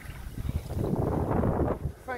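A large wels catfish thrashing its tail and splashing in the water as it is released and swims off. The splashing builds about half a second in and is loudest in the second half.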